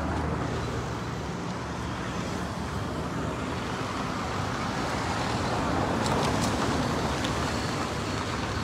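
Steady street traffic and vehicle noise, with a few faint clicks about six seconds in.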